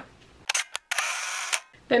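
Camera shutter sound effect: a couple of sharp clicks, then a half-second burst of hiss closed by another click.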